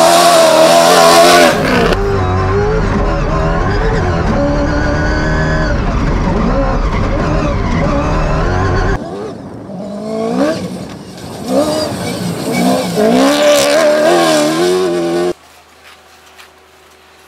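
Toyota Hilux rally-raid car driven hard on dirt: the engine revs up and drops back over and over through gear changes, with tyres skidding on loose ground. In the middle stretch, heard from on board, a deep rumble runs under the engine note.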